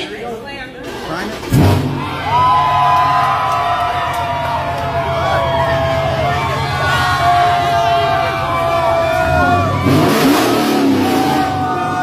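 Dodge Scat Pack's 6.4-litre HEMI V8 firing up about a second and a half in and then idling steadily on plastic-derived 'plastoline' fuel, the tank having been empty before. A crowd cheers and whoops over it.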